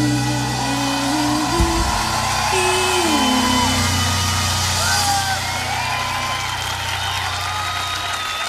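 A live pop-rock band holding a final low chord at the close of a song, a short melodic line stepping down about three seconds in, while a large festival crowd cheers and whoops; the held chord dies away near the end.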